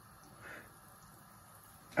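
Faint room tone, close to quiet, with one brief soft sound about half a second in.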